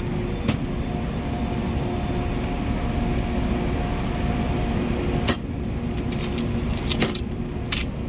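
Steel hand tools clinking against each other in a metal toolbox drawer as they are moved by hand: a sharp clink about half a second in, another a little past the middle, and a small cluster near the end. Under them runs a steady hum with a faint held tone.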